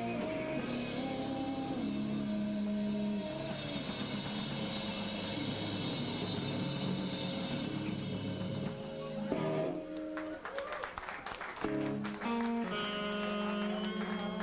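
Live rock band playing distorted electric guitars and a drum kit. About nine seconds in, the dense wall of guitar breaks up into separate hits and short chords, then held guitar notes come back in near the end.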